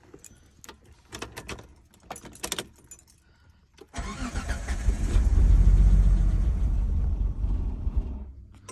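Keys jangling and ignition clicks. About four seconds in, the car's 3.0-litre V6 cranks and fires, runs briefly, then fades out near the end. It won't stay running: a hot-start stalling fault.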